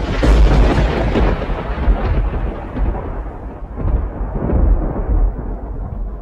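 A deep, thunder-like rumbling boom that starts suddenly and slowly dies away: a cinematic sound effect under an animated logo sting.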